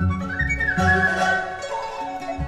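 Dizi (Chinese bamboo flute) playing a bright melody that slides up into a high held note, over instrumental accompaniment with a repeating low bass line.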